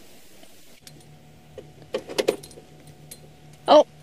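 Game-drive vehicle's engine idling steadily from about a second in, with a few sharp clicks and rattles. A brief louder sound like a voice comes just before the end.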